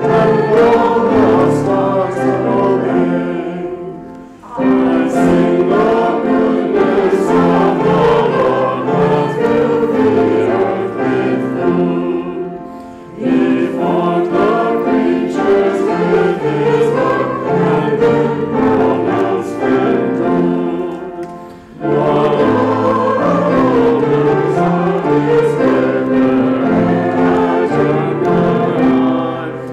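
A small congregation singing a hymn together. The singing breaks off briefly three times, about 4, 13 and 22 seconds in, between phrases.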